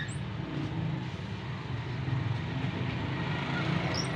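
Steady low background rumble with a faint hiss, and a short high rising squeak right at the start and again at the end.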